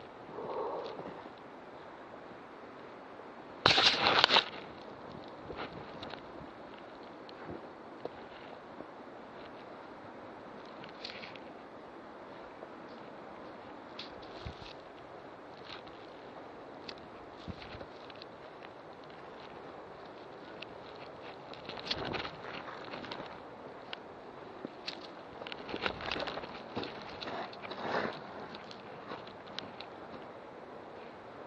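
Footsteps and rustling on dry leaf litter and undergrowth, picked up by a body-worn camera, with scattered clicks throughout. A loud, brief brushing rustle comes about four seconds in, and a run of louder steps and rustles near the end.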